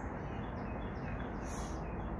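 Faint, brief bird chirps over a steady background rumble of distant road traffic.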